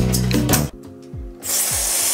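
Beat-driven music, then, about three-quarters of a second in, a cut to a steady rushing hiss of compressed gas from a pressurised inflator canister held on a bike tyre's valve, blowing air in to seat a tubeless tyre.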